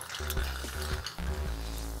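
Bourbon poured from the bottle over a ball of ice in a glass, a faint steady splashing trickle held for a four count.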